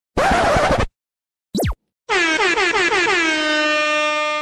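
Edited sound effects: a short noisy hit, then a quick falling swoosh. About two seconds in an air horn sound effect starts blaring; it stutters several times with a dip in pitch on each, then holds a steady blast.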